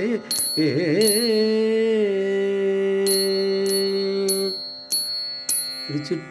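Carnatic-style singing of a Tamil devotional hymn in the Kurinji melodic mode (pann). A wavering, ornamented note settles into a long held note that ends about four and a half seconds in. Bright metallic strikes keep a steady beat, about one every 0.6 s.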